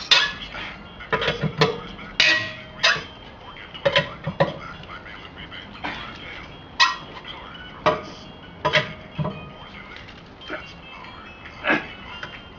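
Four-way cross lug wrench clanking and clinking on the steel wheel's lug nuts as they are broken loose one after another: about a dozen sharp metallic knocks at uneven intervals, some with a brief ring.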